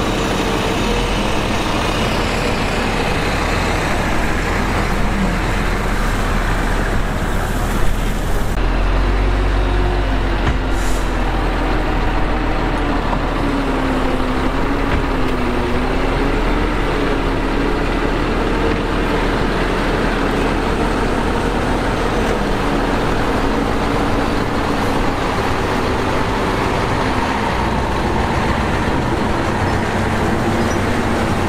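Komatsu crawler bulldozer working, its diesel engine running under load as it pushes dirt, the engine note wavering up and down.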